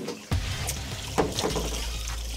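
A boat's live well hatch clunking open, a few sharp knocks over a steady rush of circulating water, with music underneath.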